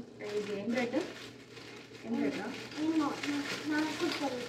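Speech: short spoken phrases with a pause of about a second in the middle.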